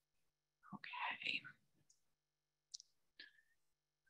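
Near silence, broken about a second in by a brief soft whisper of a voice, with two faint small clicks later on.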